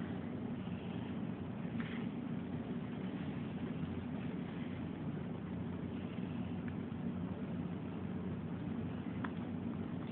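Steady low background room noise, an even hum with no distinct events.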